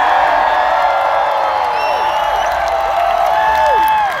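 Large concert crowd cheering and whooping as a song finishes, many voices rising and falling in pitch at once.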